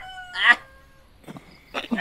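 Rooster crowing: one long drawn-out call, held and falling slightly in pitch, ending about a second in.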